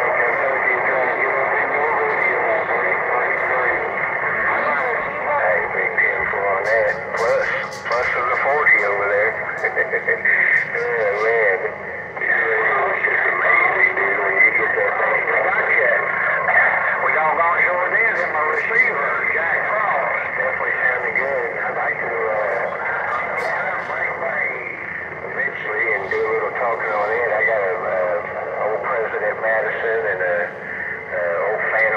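CB radio receiver audio: voices coming through a thin, band-limited radio speaker, unintelligible under the static and distortion of the channel.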